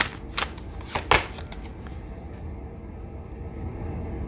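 A tarot deck being shuffled by hand, with a few sharp card snaps in roughly the first second, then only a faint low room hum.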